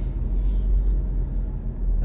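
Car engine and road noise heard from inside the cabin while driving: a steady low rumble with an even engine hum.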